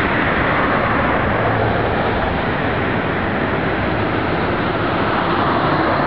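Steady road traffic: cars driving past on a busy street, a continuous rush of tyre and engine noise.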